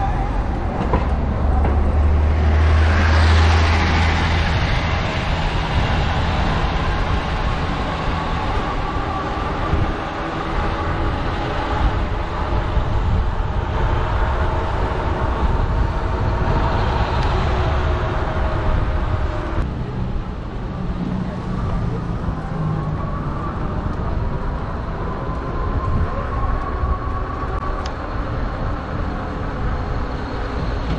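Riding noise from a Lectric XP electric bike on a city street: wind rush and road rumble, heaviest in the first few seconds, with a thin motor whine that slowly rises in pitch several times as the bike gathers speed.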